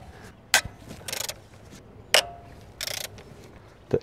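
A ratchet wrench with a 10 mm socket undoing the coil-pack bolts on a small three-cylinder engine: a sharp click, a short burst of rapid ratchet clicking about a second in, then another sharp click and a second run of ratcheting near three seconds.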